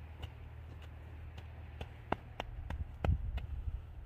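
Snow crunching in a gloved hand as a snowball is packed: a string of irregular small crackles, with a few dull thumps about three seconds in, over a low rumble of wind on the microphone.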